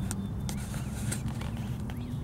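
Canada goose grazing close by, plucking grass with its bill in a few sharp, irregular clicks, over a steady low rumble of wind on the microphone.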